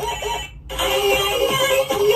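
Music breaks off briefly about half a second in, then a cell phone's melodic ringtone starts, with held electronic notes.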